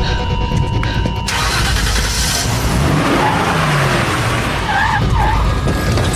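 A car driven hard with its tyres skidding on tarmac, starting about a second in, with short squeals.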